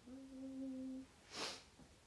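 A young woman's closed-mouth hum held on one steady note for about a second, followed by a short breath.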